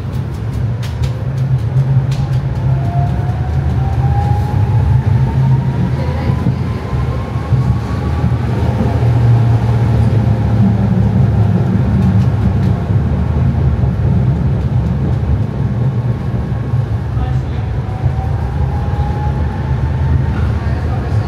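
Interior of a Tatra T3 tram moving off and running: a steady low rumble of the running gear, with a thin whine that rises in pitch over the first several seconds as the tram gathers speed and starts rising again near the end.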